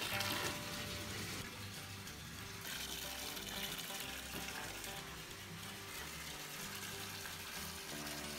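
Water running from the tap into a filling bathtub, a steady rush, with background music playing under it.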